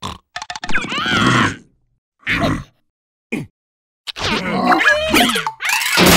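Cartoon larva characters' wordless vocalizations: a few short grunts and squeaky exclamations in separate bursts, then a busier jumble of grunts and squeals over the last two seconds, with one falling cry.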